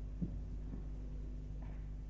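A pause in an old radio recording of Quran recitation. The recording's steady low hum and hiss is heard, with a faint click about a quarter second in.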